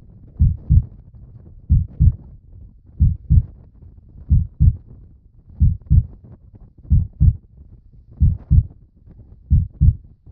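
Slow heartbeat sound: pairs of low thumps, lub-dub, repeating evenly about every 1.3 seconds, eight beats in all.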